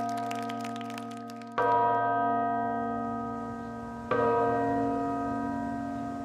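Tower clock bell striking the hour at twelve: slow single strokes about two and a half seconds apart, each ringing out and fading before the next, the ringing of the previous stroke carrying over at the start.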